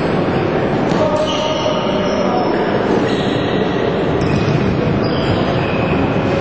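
Floorball game in a sports hall: short high squeaks scattered through, a few sharp knocks, and voices calling over a steady din.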